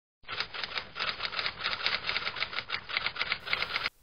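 Typewriter-style typing sound effect: a quick, even run of key clicks, about six a second, that stops just before the speech begins.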